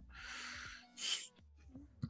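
A person's breathy exhale close to the microphone, lasting under a second, then a short, sharper breath about a second in.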